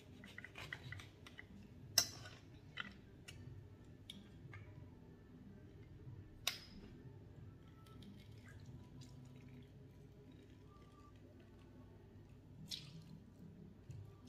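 A knife cutting a lemon on a wooden cutting board and a hand-held metal lemon squeezer pressing out juice: quiet, scattered clicks and taps, the sharpest about two seconds in and another about halfway through.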